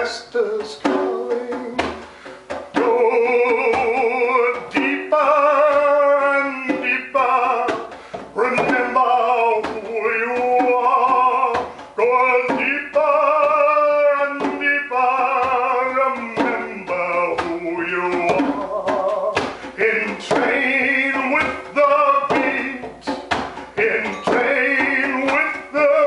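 Male overtone singing: long wordless held notes in which single overtones stand out and shift in pitch, over scattered frame drum beats.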